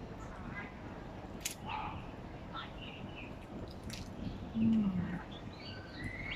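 Eating sounds: chewing and a plastic spoon clicking in a plastic food box, twice. A short "hmm" of enjoyment near the end, with faint bird chirps in the background.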